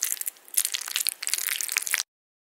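A dense run of sharp crackles and crunching, mostly high in pitch. It drops out briefly about a third of the way in and stops abruptly at the end.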